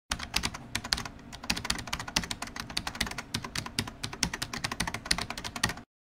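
Rapid, irregular clicking of computer keyboard typing, several keystrokes a second, stopping suddenly just before the end.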